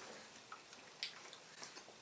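Quiet room with a few faint, short clicks spread through about two seconds.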